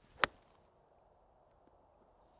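Golf iron striking a ball off grass: one sharp, crisp click about a quarter of a second in, from a solidly struck shot.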